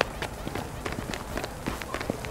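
Quick footsteps of two people hurrying down stone steps: a string of short, uneven scuffs and taps.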